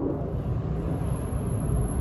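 A steady low outdoor rumble, with a faint thin high-pitched whine running over it.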